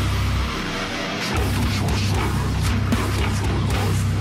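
Heavy slam death metal music playing loud and dense. The bass drops out briefly just after the start and comes back a little over a second in.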